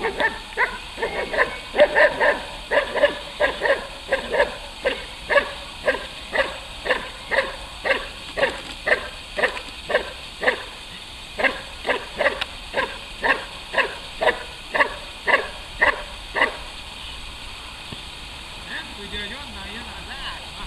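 Belgian Malinois barking hard and fast at a helper in a bite suit, a steady run of short, loud barks at about two a second. This is guard barking in protection work: the dog is held back on the leash. There is a brief pause about ten seconds in, and the barking stops about three-quarters of the way through.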